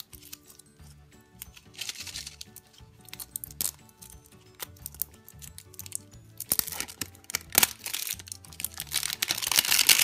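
A printed wrapper being peeled and torn off a plastic candy egg, crinkling in bursts that grow denser and louder over the last few seconds. Background music plays underneath.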